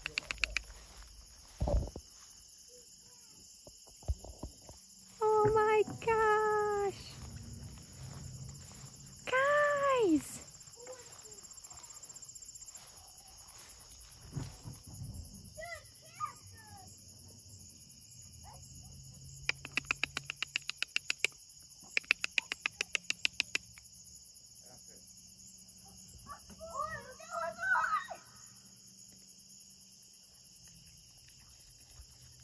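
Evening insect chorus of crickets chirping steadily in a grassy field, with a few brief soft human vocal sounds, one rising and falling, early on. About two-thirds of the way through come two bursts of rapid clicking.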